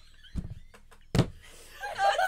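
Two dull thumps about a second apart, with a few light taps between: hands slapping down while laughing.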